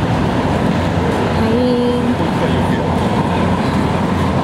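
Steady, loud din of city street traffic, with a short held voice sound about one and a half seconds in.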